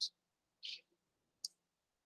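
A single short, sharp computer mouse click about one and a half seconds in, advancing the presentation slide, in a quiet gap with a faint short hiss before it.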